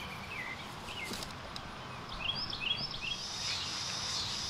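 Small songbirds chirping in quick runs of short hooked notes, one run just after the start and another in the second half, over steady outdoor background noise. A steady high hiss sets in during the last second.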